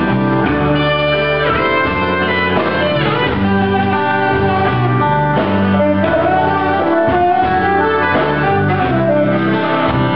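Live band playing a slow rock ballad: a saxophone plays the lead melody in long, gliding notes over electric guitar, bass guitar and drums.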